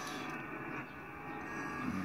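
Single-sideband shortwave receiver tuned to the 20 m JT65 frequency: steady band-noise hiss, cut off sharply above a narrow voice-width passband, with several faint steady tones of weak digital-mode signals in it.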